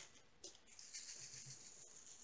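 Faint handling of diamond-painting supplies: a light rattle of loose drills in a plastic tray and a soft, high rustle of a clear plastic sheet being laid on the canvas, with a couple of tiny clicks.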